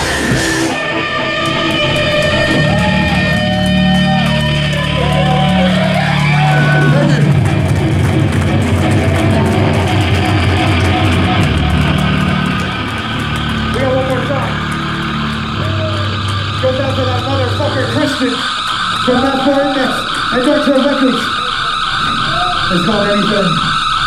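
Live heavy band music: distorted guitars, bass and drums with frequent cymbal crashes, and a vocalist coming in over the second half.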